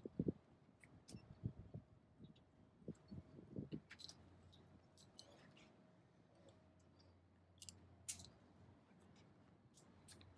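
Faint, scattered clicks and knocks of climbing gear being handled: a harness, buckles and a camera mount being fitted. There are soft handling thumps in the first few seconds and sharper clicks later.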